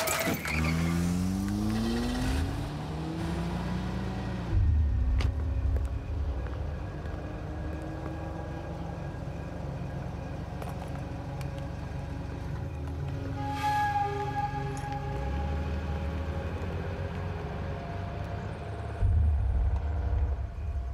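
A car engine revving, its pitch rising over the first few seconds, then a steady low rumble under the film's music score.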